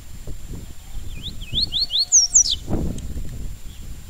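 Papa-capim seedeater singing a short phrase of its 'tui-tui' song: four quick rising whistled notes, then two higher notes sliding down. Low rustling and thumps run under it, with the strongest thump just after the song.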